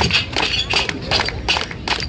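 Scattered hand-clapping from a small audience: irregular sharp claps, a few to several a second, cheering the performer on as he climbs.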